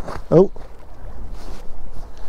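A man's short exclamation, 'oh', over a steady low rumble of wind and water around a small boat, with a few faint knocks later on.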